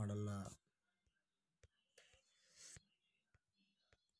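A man's voice stops about half a second in. After that it is nearly silent except for about half a dozen faint, sharp clicks and a soft, breathy hiss in the middle.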